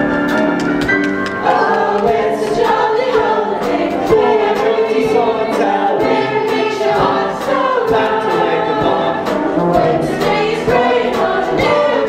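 A large chorus singing a show tune together over instrumental accompaniment with a steady beat.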